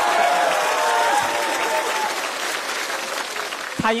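Studio audience applauding, with crowd voices mixed in; the applause fades away over a few seconds, and a man starts speaking into a microphone just before the end.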